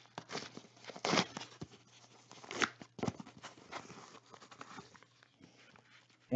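A trading-card pack being torn open by hand, its wrapper crinkling and tearing in a run of irregular crackles.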